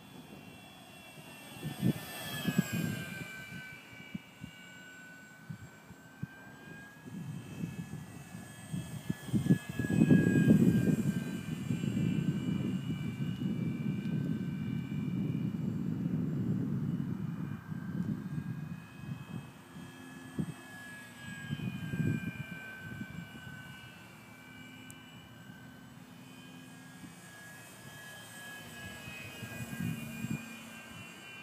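Electric motor and propeller of a Parkzone F4U-1A Corsair RC park flyer whining in flight, the pitch sliding up and down as it passes and changes throttle. A low rumbling noise comes and goes beneath it, loudest about ten to seventeen seconds in.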